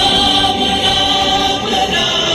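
Background music with a choir singing long, held notes.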